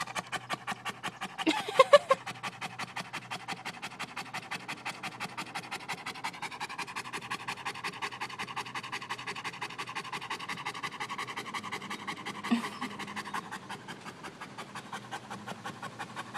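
A Rottweiler panting fast and steadily, about five breaths a second, cooling itself in the heat. A short, louder vocal sound comes about two seconds in.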